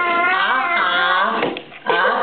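A young child's drawn-out, wordless whining vocal sound that wavers in pitch for about a second and a half, then breaks off briefly before the voice starts again near the end.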